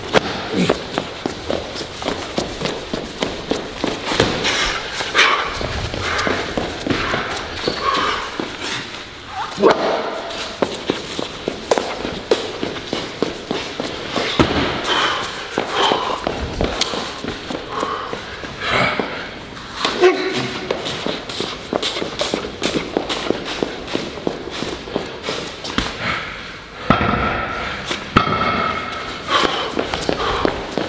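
Heavy strongman sandbags and barrels thudding down onto the floor again and again during a timed loading run, between quick heavy footsteps. Wordless voices grunt and shout over the thuds, loudest near the end.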